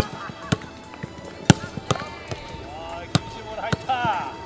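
Football being passed and trapped on grass in a quick stop-and-kick drill: sharp thuds of kicks and first touches, about five in four seconds at uneven spacing.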